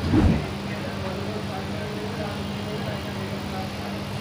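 Steady low hum and background noise with faint distant voices, and a brief low thump right at the start.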